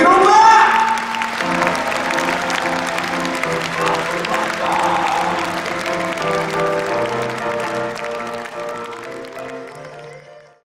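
Live rock band playing a song's closing with audience applause: a rising glide at the start, then held chords with shifting notes over steady clapping. The sound fades out over the last few seconds.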